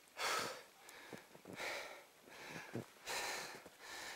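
A hiker's heavy breathing while climbing through deep snow: three faint breaths about a second and a half apart.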